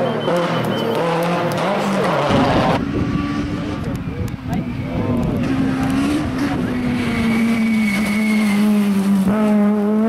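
Rally car engines at high revs on a special stage, the pitch climbing and dropping with throttle and gear changes as the cars pass. The engine note changes abruptly twice as a different car takes over.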